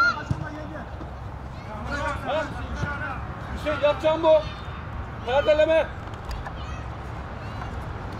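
Voices shouting calls across a football pitch, with loud shouts about two, four and five and a half seconds in, over steady low outdoor background noise.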